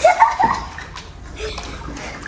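Water splashing and sloshing in an inflatable paddling pool as a child moves about in it, with a brief child's voice at the start.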